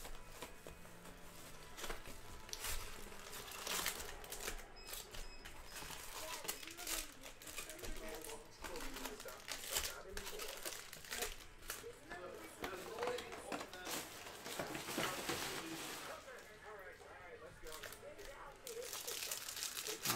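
Plastic shrink wrap crinkling and tearing as it is stripped off a cardboard trading-card box, with irregular rustles and crackles of handling as the box is opened.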